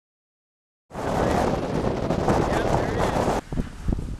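Strong wind buffeting the microphone, a loud rushing noise that cuts in suddenly about a second in and drops off abruptly shortly before the end, with faint voices under it.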